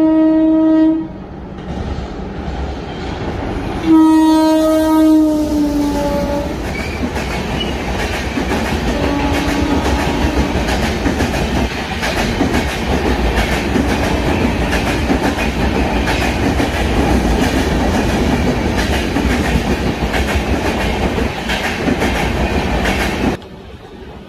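An express train passing through a station at speed: its horn sounds briefly, then again about four seconds in for some two seconds, its pitch dropping at the end. Then the coaches rush by, loud and steady, with the wheels clattering over the rail joints, until the sound cuts off near the end.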